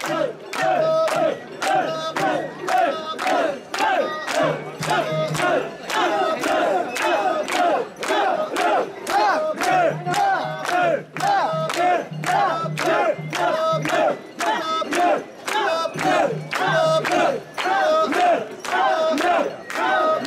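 Mikoshi bearers chanting together in a rhythmic call as they carry a portable shrine, with hand clapping keeping time about twice a second.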